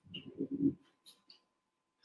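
A man's short, low closed-mouth hum, a wordless filler sound lasting under a second, followed by a couple of faint clicks.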